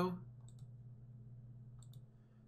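Faint computer mouse clicks, one about half a second in and a couple near the end, over a low steady hum.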